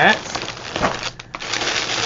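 Plastic shipping bag and wrapping crinkling as they are handled, with a brief lull a little past the middle.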